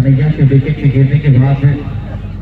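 A man talking loudly in match commentary, his voice stopping shortly before the end.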